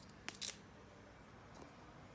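Scissors snipping through a strip of grey duct tape: one quick cut heard as a short cluster of sharp clicks about a quarter to half a second in.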